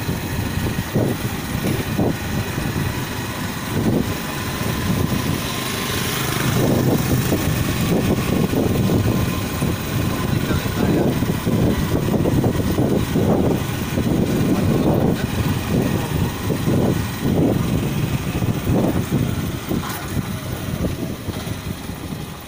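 A vehicle engine running steadily while travelling along a road, with wind buffeting the microphone in irregular gusts.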